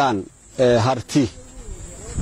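A man speaking in short phrases with brief pauses between them.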